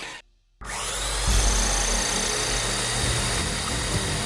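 Cartoon sound effect of a rotary multi-barrel gun firing one long, unbroken burst. It starts suddenly about half a second in, after a brief silence.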